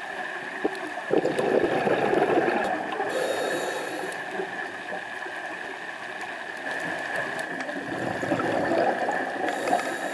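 Scuba diver breathing through a regulator underwater: exhaled bubbles rumble out for about two seconds, then a short hiss of inhalation, and the cycle comes round again near the end. A constant high tone runs underneath.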